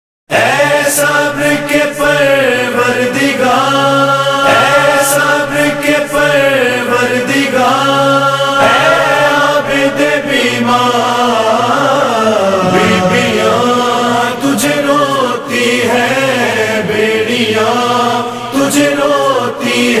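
Layered low voices chanting a slow, sustained lament melody without words, the sung chorus opening of a noha.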